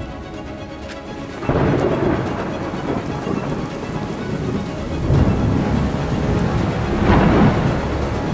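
Thunder rolling over rain: a sudden loud rumble about a second and a half in, swelling again near the middle and near the end, with soft music underneath.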